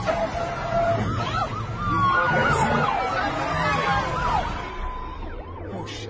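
Film car-chase sound effects: vehicle engines running under many overlapping high squeals that rise and fall in pitch, fading toward the end.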